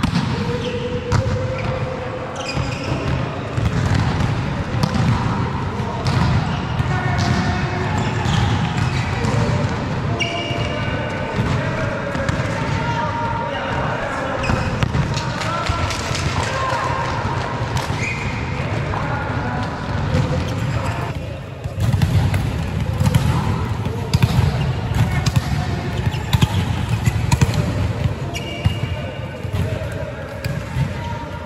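Volleyball play on an indoor court: repeated sharp slaps and thuds of the ball being struck and hitting the floor, with footsteps, short squeaks and players' calls in a large hall.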